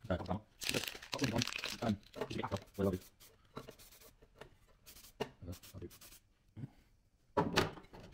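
A man talking quietly and indistinctly, with short rustling and clicking handling noises in the quieter middle stretch.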